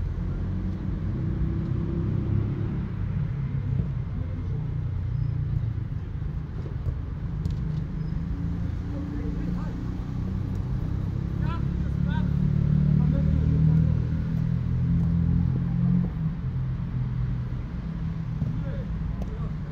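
Players' voices and calls from across a football pitch over a steady low rumble, growing louder for a couple of seconds past the middle.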